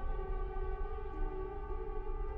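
Tense film score of sustained string chords: long held notes layered over a low rumble, with a new lower note entering about a second in.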